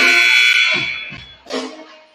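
A gymnasium scoreboard horn sounds, loud and steady, and fades out a little over a second in. Music plays underneath it.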